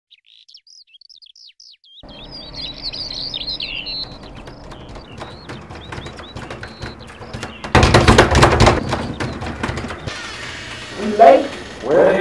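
Birds chirping in short, quick calls over a faint background hiss, followed by scattered clicks and a loud burst of noise about eight seconds in. A voice is heard near the end.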